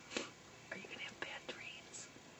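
A person whispering, with a brief sharp noise just after the start.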